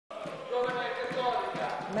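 A person's voice, drawn out and wavering.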